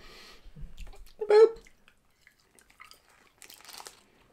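Chewing a soft, sugar-coated fruit jelly candy, with faint scattered mouth clicks. A short voiced "boop" about a second in is the loudest sound.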